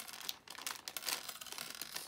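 Crinkling and rustling of a thin plastic LEGO DOTS packet being opened by hand, a quick run of irregular crackles.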